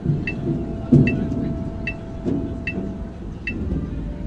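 High school marching band and front ensemble in a sparse, quiet passage: deep drum hits, the loudest about a second in, under a steady held note, with a light high tick repeating a little more than once a second.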